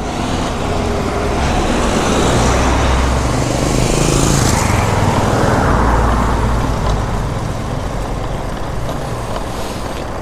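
Street traffic noise and wind rush on the microphone, heard from a bicycle riding along a city street. The noise swells for several seconds in the middle, then eases.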